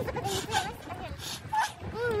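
A woman's high-pitched voice making short, wavering vocal sounds: a few quick ones at the start and another near the end.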